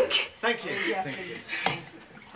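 Glassware clinking at a sideboard as drinks are got ready, with a few sharp clinks.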